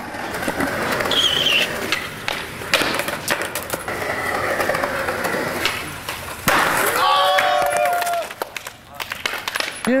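Skateboard wheels rolling on concrete, then a sharp clack of the board landing about six and a half seconds in as a skater jumps a stair set, followed by voices shouting.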